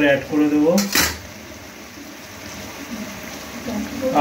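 A single sharp metallic clink of a utensil striking a nonstick frying pan of chicken in gravy, about a second in, followed by a low steady hiss.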